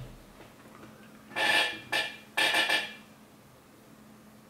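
A man laughing in three short, breathy bursts, about a second and a half in, two seconds in and near three seconds.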